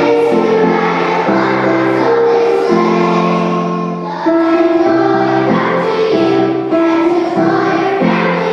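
Children's choir singing in unison on long held notes; one phrase dies away about four seconds in and the next begins.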